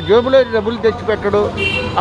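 A man speaking Telugu in a street interview, over a steady low background hum. A brief high-pitched tone sounds near the end.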